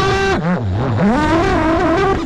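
FPV quadcopter's brushless motors and propellers whining. The pitch drops sharply about half a second in and climbs back up about half a second later.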